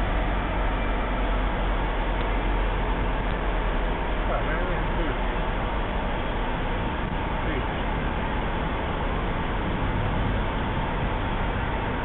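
Fendt tractor pulling a Krone multi-rotor hay rake through cut grass, a steady noise of engine and working machinery.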